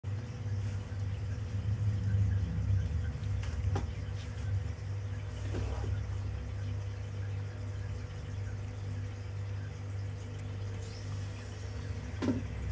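A steady low hum with a faint high tone over it, and a couple of faint short clicks.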